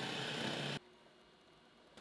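Electric hand mixer running steadily, its beaters whisking batter in a glass bowl; the sound cuts off suddenly just under a second in, leaving near silence.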